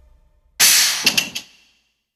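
A pendulum hammer strikes a G-Shock DW-5600 watch in a shock-resistance test: one sudden loud crack about half a second in, then a few sharp clinks that die away within a second.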